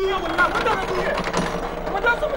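A person's voice, its words not made out.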